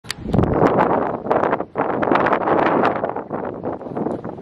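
Wind buffeting the camera microphone: a loud, crackling rush of noise with a short lull about a second and a half in.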